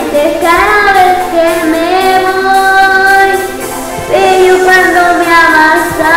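A woman singing a Spanish pop ballad over its backing music, holding long notes, with a new note starting about four seconds in.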